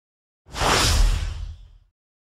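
A whoosh sound effect for a production-logo reveal, with a deep rumble beneath it. It swells in suddenly about half a second in and fades away over about a second.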